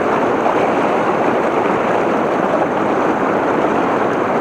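Steady rushing of fast river water, loud and even, swelling up suddenly at the start.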